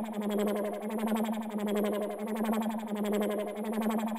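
Synthesizer melody from an electronic trap instrumental beat playing on its own, with no drums or bass. It is a fast, evenly pulsing texture over a held low note, quieter than the full beat.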